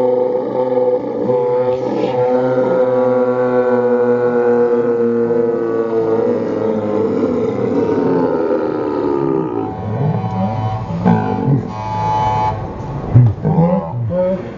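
Men yelling one long drawn-out note into the camera. The pitch slides down and breaks off about ten seconds in, followed by a few shorter shouts.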